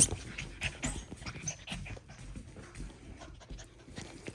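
F1b goldendoodle puppies panting and licking close up, amid irregular scuffling of paws and fur against clothing.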